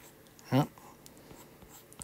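Faint taps and scratches of a stylus drawing on a tablet's glass screen, with one brief vocal sound from the artist, falling in pitch, about half a second in.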